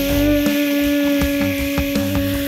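A steady, even buzzing hum, a cartoon sound effect for a large ladybird in flight, over background music with a low regular beat.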